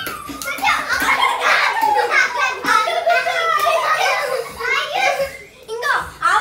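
Several children talking and calling out over one another while they play a running, chasing game.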